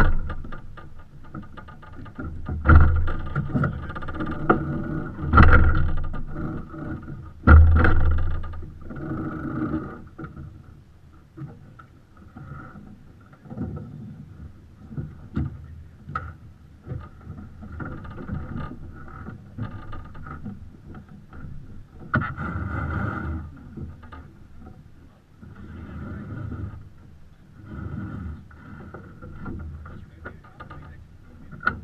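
Sailing yacht under way in light air: water washing along the hull and wind noise on the microphone. A few deep thumps come in the first eight seconds, with small clicks of the crew handling lines in the cockpit.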